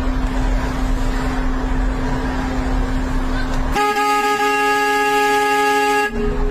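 City street traffic noise with a steady low hum. About four seconds in, a car horn starts suddenly and is held down on one steady note for over two seconds.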